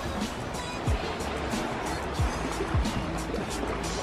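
Background music with a steady beat: quick regular hi-hat ticks over deep bass drum hits that slide down in pitch.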